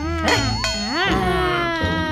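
High-pitched, buzzy, wordless cartoon character voices whining with pitch sliding up and down, rising and falling about a second in.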